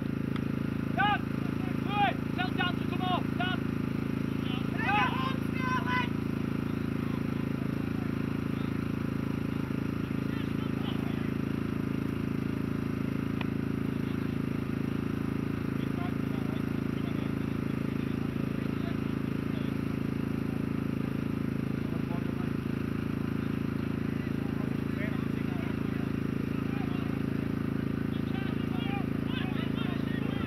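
Rugby players shouting calls to each other on the pitch, several short shouts in the first few seconds and more near the end, over a steady low outdoor rumble.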